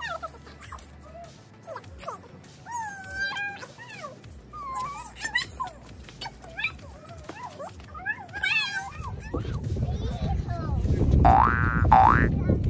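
Young children's high, gliding voices and squeals without clear words. About three seconds before the end, low wind rumble on the microphone comes in, and near the end a quick, loud rising whistle-like sweep sounds.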